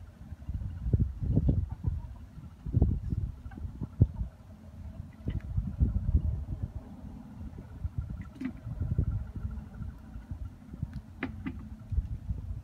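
Wind buffeting the microphone: an uneven low rumble that swells and falls, with a few faint clicks near the end.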